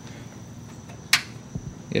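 A handheld light being switched on: one short, sharp click a little over a second in, over faint steady background noise.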